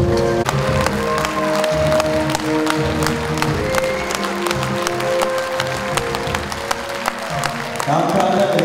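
An audience applauds over a film's end-credit music, which plays long, held notes. The clapping starts about half a second in and keeps up.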